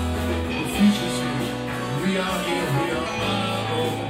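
Live rock band playing an instrumental passage: electric guitars over bass notes and a steady drum beat, with one louder drum hit about a second in.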